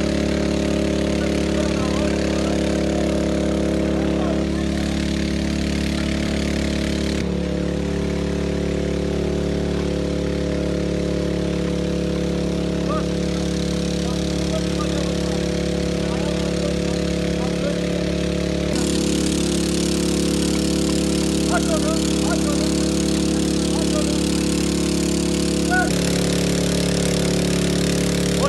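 Small engine-driven water pump running steadily, pumping floodwater out of flooded basements. Voices are faint in the background.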